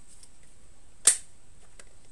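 A single sharp click about a second in, with a few faint ticks before and after it.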